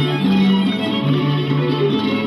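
Slovak folk string-band music: fiddles playing over a bass line that alternates between two low notes.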